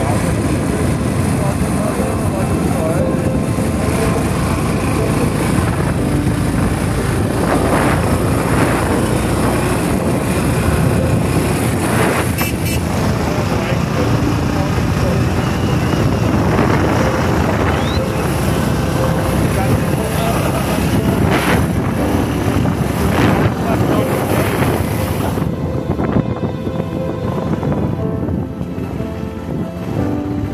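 Bajaj Platina motorcycle on the move, its engine running under steady wind rush on the microphone. About 26 s in, the wind noise thins out and gets a little quieter as the bike slows.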